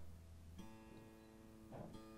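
Electric guitar string plucked once and left ringing as one faint, steady note while the guitar is being tuned to standard pitch.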